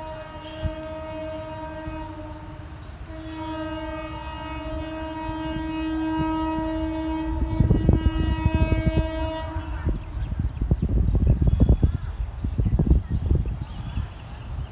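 Horn of an approaching Vande Bharat Express (Train 18) electric trainset: two long blasts, the second held for about six seconds. From about eight seconds in, a loud, irregular low buffeting rumble is the loudest sound.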